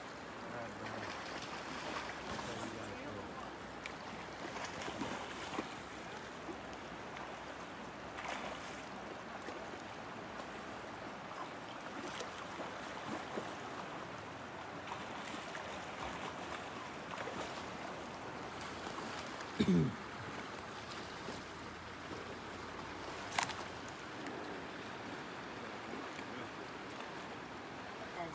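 Steady rush of the fast, high-running Kenai River current. A person clears their throat about two-thirds of the way through.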